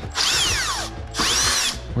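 Cordless drill-driver run in two short trigger pulls, its motor whine swelling and dropping off each time.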